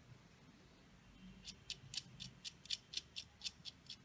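A quick series of about a dozen faint, light clicks, roughly five a second, starting about a second and a half in: a small screw and nut being turned by hand to fasten a plastic BO gear motor to a perforated metal robot chassis.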